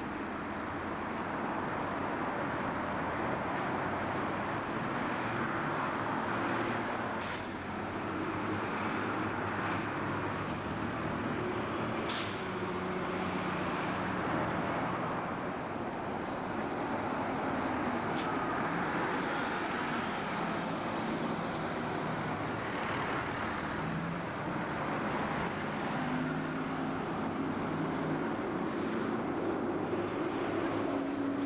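Buses and road traffic running past, diesel engines humming at changing pitch over a steady roadway noise, with a few brief sharp sounds at intervals.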